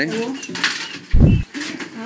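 Faint voices and light clinking in a room, with a short low thump a little over a second in, the loudest sound here.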